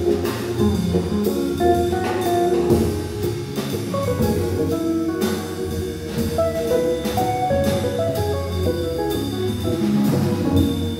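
Live jazz organ trio playing a blues: hollow-body electric guitar, Hammond organ and a drum kit with cymbals, all playing together steadily.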